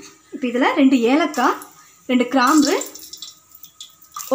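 A woman's voice speaking in two short phrases, with a quieter pause in the last second.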